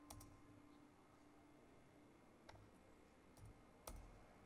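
Near silence broken by a few faint clicks of a computer keyboard and mouse: one just after the start, one about two and a half seconds in, and a sharper one near the end.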